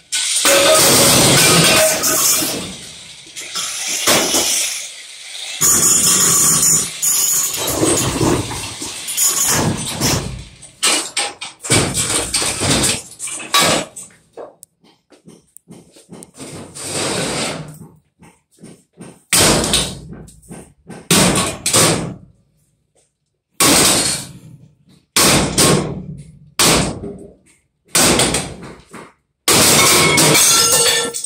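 A corded power tool grinding and hammering into a porcelain toilet tank, with the porcelain cracking, for roughly the first ten seconds. Then a run of separate loud crashes as the toilet is smashed apart and porcelain pieces break and fall.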